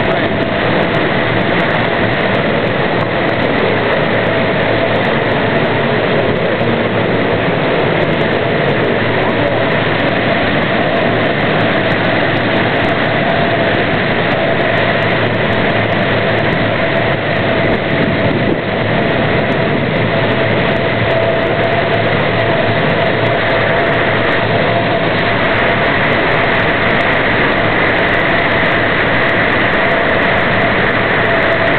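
A heavy engine running steadily and loudly, with a constant high whine over its drone.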